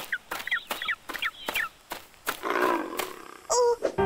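Bird calls: a string of short clucking calls, each falling in pitch, about two a second, then a longer, harsher call in the last second and a half.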